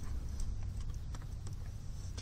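Faint, irregular small clicks and ticks of a plastic card edge and fingertips working vinyl overlay down into the edge of a plastic grille bar, over a low steady rumble.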